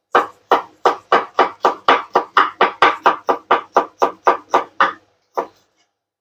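Knife chopping garlic cloves on a wooden cutting board: a steady run of sharp knocks, about four a second, stopping about five seconds in after one last chop.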